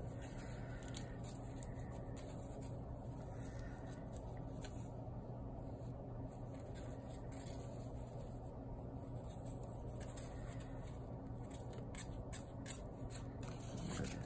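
Faint scratching and rustling of yarn pulled with a plastic weaving needle through the warp strings of a cardboard loom, with a few light clicks, over a steady low hum.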